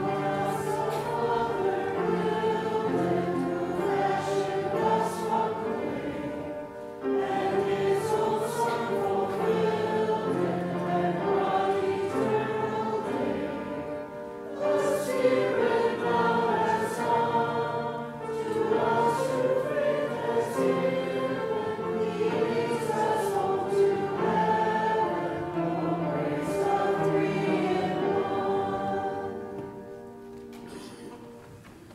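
A church congregation singing the last stanza of a hymn in phrases, over held accompanying notes. The singing closes near the end.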